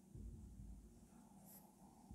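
Faint strokes of a marker writing on a whiteboard, with a short high squeak part way through, over a low steady room hum.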